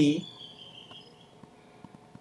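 A man's lecturing voice ending a word, then a pause of low room tone. A faint thin high whine runs for about a second just after the word.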